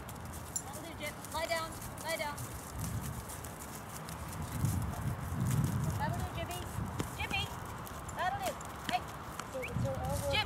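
A person's voice in a few short, scattered calls, over a low rumbling noise that is loudest about halfway through.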